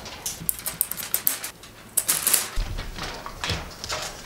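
Thick aluminium foil crinkling and crackling as it is handled, a quick run of small crackles and clicks, with a dull knock about two and a half seconds in.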